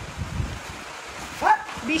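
A dog gives a short bark, rising sharply in pitch, about one and a half seconds in, during rough play. Before it come a few low thumps.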